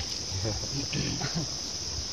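Steady high-pitched drone of insects, with faint voices murmuring underneath.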